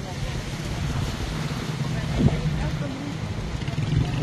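A car's engine and tyres giving a steady low rumble as it moves slowly, with faint, indistinct voices mixed in.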